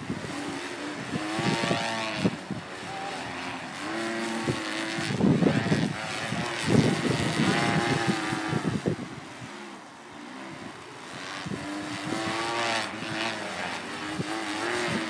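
Two On The Line Maverick stunt kites buzzing as they sweep through the wind, a pitched hum that rises and falls and swells every few seconds with each fast pass, mixed with gusts of wind on the microphone.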